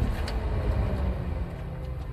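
Aston Martin V12 Vanquish engine rumbling low and gradually dying down, with film-score music over it.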